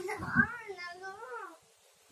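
A young girl laughing: a run of high, wavering, voiced sounds that stops about a second and a half in.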